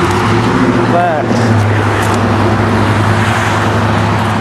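Road traffic passing close by: cars driving along the road, a loud steady rush with a low engine hum throughout.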